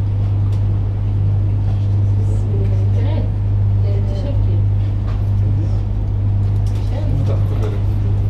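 Indistinct chatter of several people over a steady, loud low hum.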